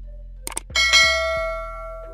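A couple of quick clicks, then a bright bell ding about three-quarters of a second in that rings down over about a second, a notification-bell sound effect. It plays over steady background music.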